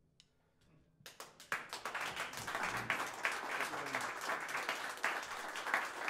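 Audience applause breaking out about a second in, after a moment of near silence, then steady clapping.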